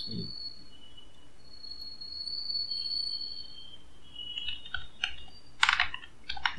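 Computer keyboard keystrokes: a few light taps, then a quick run of typing near the end, over a faint high thin tone.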